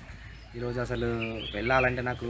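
A man's voice, with no clear words, while a small bird chirps briefly in the background about a second in.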